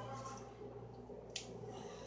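Faint room tone: a steady low hum with a single small click partway through.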